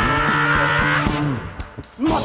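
Live pop-rock band of electric guitar, bass and drums playing a held passage that stops abruptly about a second and a half in. A single click sounds in the short gap, and the full band comes back in at the end.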